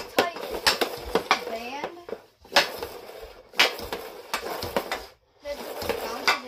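CCM Ribcor Trigger 4 Pro stick blade clacking against a puck on plastic dryland tiles during stickhandling: quick, irregular clicks broken by a few brief pauses.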